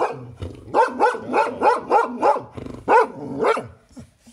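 A dog barking in a rapid series, about nine short barks at around three a second, with brief pauses early on and just past the middle.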